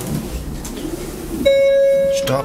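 Faint background music, then about one and a half seconds in, the 2005 KONE MiniSpace elevator's electronic chime sounds a loud, steady single tone held to the end.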